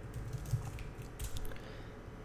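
Computer keyboard typing: a handful of scattered, fairly quiet keystrokes.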